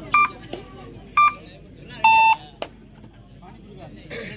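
Short electronic beeps about once a second, then a longer, lower beep about two seconds in, over the murmur of a crowd's voices.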